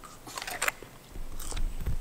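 A crisp, crunching bite into a green apple, with a second crunch of chewing about a second later.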